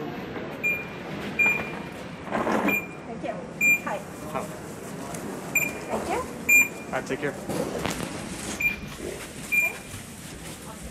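Airport gate boarding-pass scanner giving short high beeps again and again, often in pairs, as passengers scan in, over the chatter of people around the gate.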